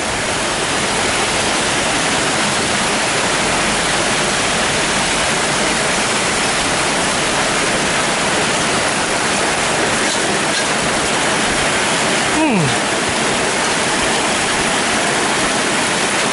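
Heavy tropical downpour: a loud, steady hiss of rain pouring down without a break. A short falling tone cuts through once, about twelve seconds in.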